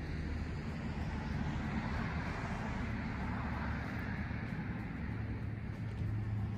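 Steady outdoor background noise: a low rumble with a hiss over it, with no sharp knocks or other separate events.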